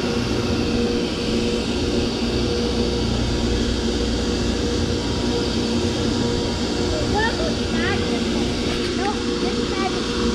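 Steady machinery hum of constant pitch over a low rumble, like a generator or engine running in the shipyard. A few faint, short rising chirps come in near the end.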